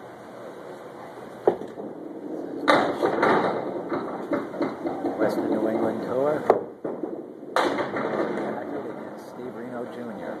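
A candlepin bowling ball knocks onto the wooden lane about a second and a half in. A loud clatter starts just under three seconds in as it reaches the pins. Voices and alley clatter follow, with another sharp knock a little past the middle.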